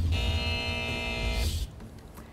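Short TV logo transition sting: a held electronic chord over a deep bass rumble, with a rush of noise near its end, cutting off about a second and a half in.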